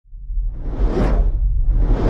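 Whoosh sound effect over a deep rumble, swelling to a peak about a second in and building again near the end: the sting of a channel logo intro.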